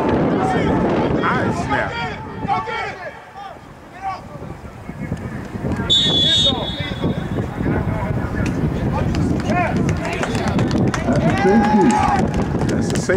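Outdoor voices calling and shouting during a football play, with a short, high referee's whistle blast about halfway through as the play ends near the goal line.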